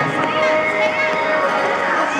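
Voices of children and other skaters calling out and chattering over background music with long held notes.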